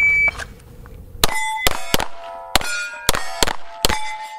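A shot timer's short high start beep, then a rapid string of 9mm shots from a Steyr L9A1 pistol, each hit followed by the ring of struck steel plates. The string is timed at 4.17 seconds.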